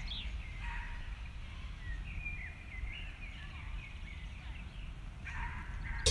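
Outdoor ambience: a low steady rumble with birds chirping faintly now and then.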